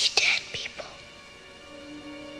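A whispered voice for the first second or so, breathy and unpitched, over a dark, sustained music drone of held tones; a lower held note comes in near the end.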